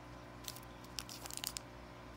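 Foil wrapper of a Yu-Gi-Oh! booster pack crinkling in the hands as it is picked up and handled, a scatter of short, faint crackles through the second half.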